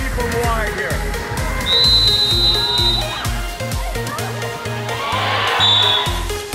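Electronic dance music with a steady, thumping bass beat, mixed with voices. A long, high whistle sounds about two seconds in and a short one near the end.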